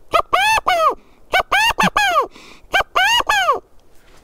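Handmade stick-style quail call with a rubber-band reed, blown with the hands cupped around it to imitate a Gambel's quail's "chakigago" call. Three calls of three or four clear notes each, every note rising and then falling in pitch.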